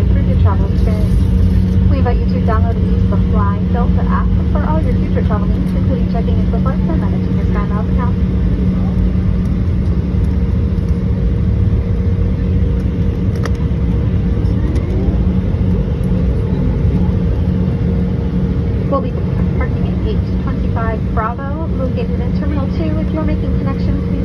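Jet airliner taxiing, heard from inside the cabin: a steady low rumble with a constant hum. Voices come over it in the first several seconds and again near the end.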